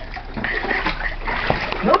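Water splashing in a small inflatable paddling pool as a toddler moves about in it, with voices over the splashing.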